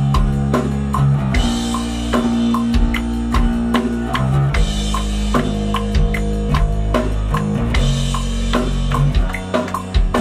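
Four-string electric bass guitar playing a simple groove of held, sustained notes over a rock drum track with a steady beat. This is a recording take in which the bassist is simplifying his part to lock in with the kick drum.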